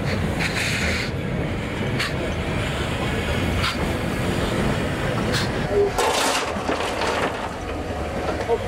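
Cape Government Railways 6th Class steam locomotive moving slowly past: a low, steady rumble with a burst of steam hiss every second or two.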